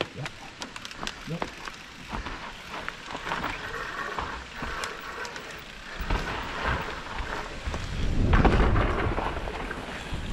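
Mountain bike descending a steep dirt trail: tyres running over dirt and leaf litter, with many sharp clicks and knocks from the bike rattling over the rough ground. A low rumble of wind and bumps on the helmet microphone grows louder in the second half.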